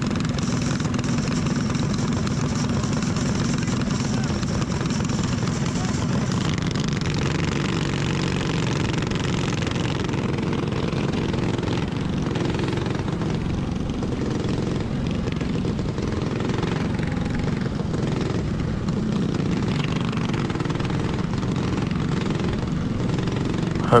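Predator 212 single-cylinder kart engine running at a steady, moderate speed with no revving, the kart rolling at caution pace on the dirt track.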